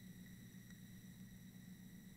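Near silence: room tone with a faint steady electrical hum.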